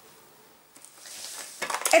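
Faint handling sounds: a few light clicks and a soft rustle as hands work thread and a nylon stocking stuffed with cotton wadding. A woman's voice starts near the end.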